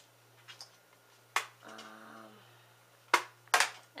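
Sharp plastic clicks from makeup palette cases being handled: one about a third of the way in, then two close together near the end. A brief, faint hummed voice comes between them.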